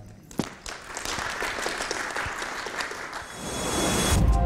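Applause from a small audience of about fifteen people, individual claps audible. It picks up about half a second in and fades out near the end.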